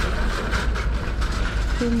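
Steady low rumbling background noise of an outdoor car park, with no single distinct event.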